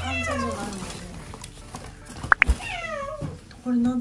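A cat meowing twice, each meow long and falling in pitch, with a pair of sharp clicks between the two.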